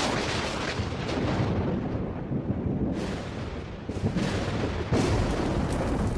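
Thunder: a continuous rolling rumble broken by sharp cracks, with fresh claps about three seconds in and again near four and five seconds.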